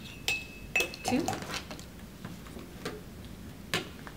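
A measuring spoon clinking twice against the rim of a large ceramic mug with a short ring, as tablespoons of flour are tapped in, and one more sharp click near the end.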